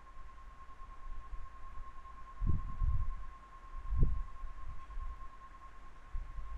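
A steady thin electrical whine with a few dull low thumps: a cluster about two and a half seconds in and a single one about four seconds in.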